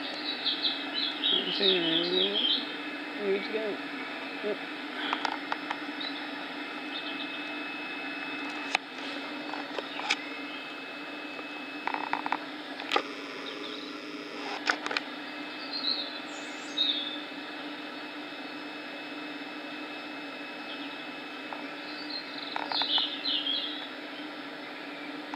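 South West Trains Class 450 Desiro electric multiple unit pulling out of the station: a steady electrical hum, with its tone changing a couple of times around the middle. A voice is heard briefly at the start, and birds chirp now and then.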